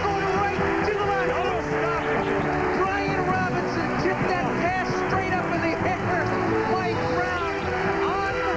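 Stadium crowd cheering, with many voices shouting at once, after a game-winning overtime touchdown, over background music with long held notes.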